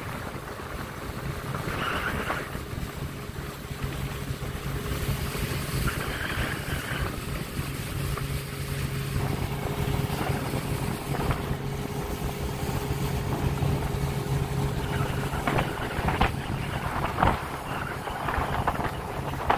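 A boat's outboard motor running steadily, with wind on the microphone and water rushing past the hull.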